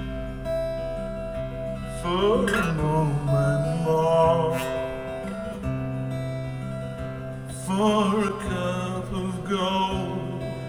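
A man singing with vibrato to his own strummed acoustic guitar, live. The voice comes in about two seconds in and again near the end, with held guitar chords ringing between the phrases.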